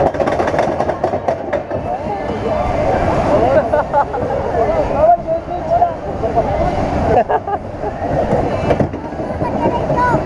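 Small family roller coaster cars rumbling and rattling along the track, with the riders shouting and laughing.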